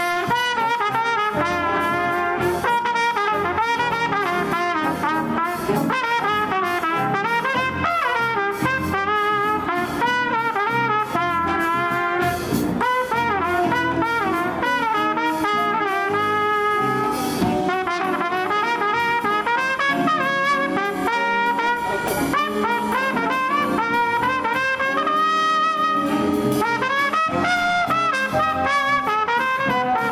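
A live jazz big band playing a swing tune, with a trumpet solo at the front over saxophones, guitars, bass and the rest of the band.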